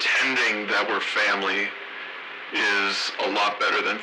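A voice speaking in short phrases, thin with no bass, with a pause of about a second midway and little or no music beneath it.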